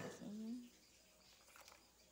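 A sharp click as a plastic cup of pens is handled, followed by a short wordless vocal sound with a gliding pitch lasting under a second, then quiet room tone.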